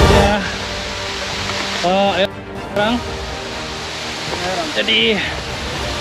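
Steady rush of waterfall and stream water, with short snatches of voices about two and five seconds in. Background music fades out at the very start.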